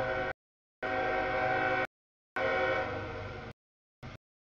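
Freight locomotive air horn sounding for a grade crossing as the train approaches: a blast ending just after the start, then two longer blasts of about a second each, with clean breaks between them.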